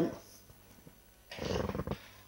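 A man's short, rough breath sound, like a throat-clearing, about two-thirds of the way through a pause in his speech, after a second of near silence.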